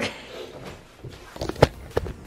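A few short knocks against quiet room noise, the loudest about a second and a half in, with another just before the end.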